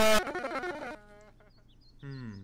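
Puppet-show audio from a YouTube Poop edit: a very loud, distorted, voice-like squawk cuts off suddenly just after the start. A short bit of quieter puppet voice follows, then it goes nearly quiet for the last second.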